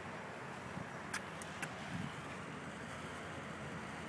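Faint steady outdoor background noise with a few light, sharp clicks between about one and two seconds in.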